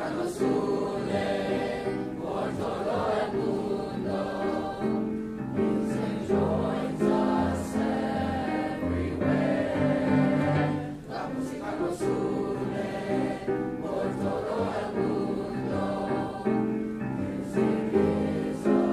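A large mixed choir of junior high school students singing, holding sustained notes in changing chords.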